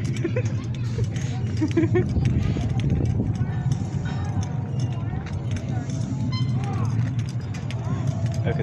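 A haunted attraction's ambient soundtrack: a steady low drone with scattered clicks, and a person laughing briefly about three seconds in.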